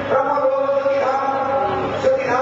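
A man chanting a devotional verse in long held notes, moving to a new note about once a second.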